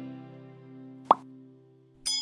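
Intro music with held notes dying away, broken about a second in by a single short pop: a mouse-click sound effect for the animated subscribe button.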